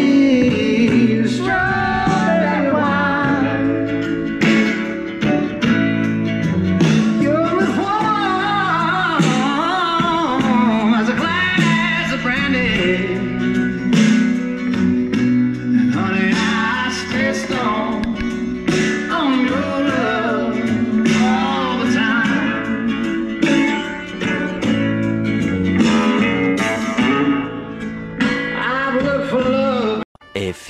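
A song with a male singer and guitar playing at maximum volume through the toy hauler's newly fitted exterior Rockford Fosgate Punch marine 6.5-inch speakers.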